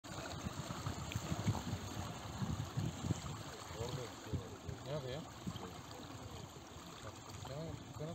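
Water sloshing and splashing around people wading waist-deep through a canal, busiest in the first three seconds. Faint voices call out a few times from about four seconds in.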